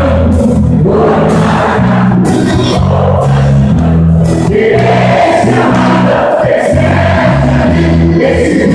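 German-style wind band (bandinha) playing live: a bass line of held notes stepping from one pitch to the next under a sustained melody, loud and continuous.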